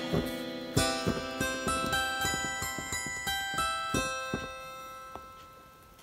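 Casio Privia PX-S1000 digital piano playing its harpsichord tone: a run of plucked notes that rings out and dies away over the last second or so.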